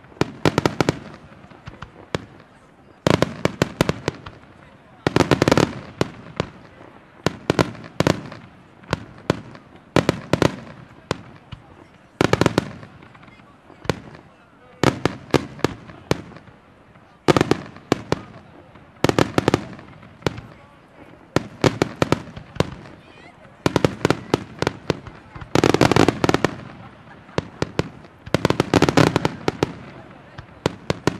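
Aerial firework shells bursting overhead: sharp, loud bangs in quick clusters every second or two, with denser volleys of many reports near the start and again near the end.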